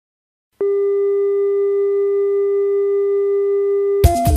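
A single steady electronic tone that starts abruptly about half a second in and holds at one pitch without change.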